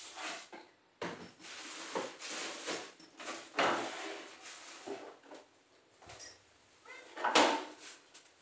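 Things being picked up and moved about on kitchen shelves: irregular knocks, scrapes and rustles, loudest about seven seconds in.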